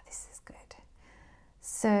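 A pause in a woman's speech: a soft breath and a few faint mouth clicks, then she starts speaking again near the end.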